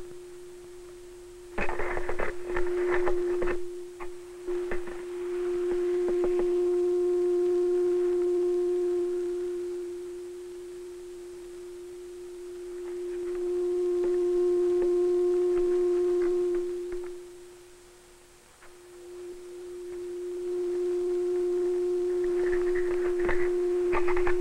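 Steady low oscillator tone from a horn loudspeaker, picked up by a microphone that is moved through a standing wave in front of a baffle. The tone swells loud and fades twice, nearly vanishing at a node about two-thirds of the way through, then rises again. A few handling clicks come in the first few seconds.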